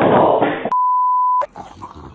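A loud, noisy commotion that includes a voice, then a single steady one-pitch censor bleep lasting under a second. After the bleep the sound drops to quiet with a few faint clicks.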